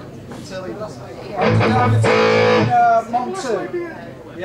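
An amplified electric guitar chord is strummed about a second and a half in and left to ring for just over a second during a band's soundcheck.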